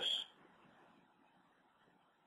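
A man's voice finishes a word with a drawn-out 's' in the first moment, then near silence: faint room tone.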